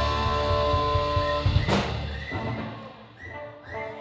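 A live rock band's final chord: electric guitar and bass hold a ringing chord, and a cymbal crash on a Pearl drum kit comes a little under two seconds in. After that the chord fades away, and a few short, high rising whoops come near the end.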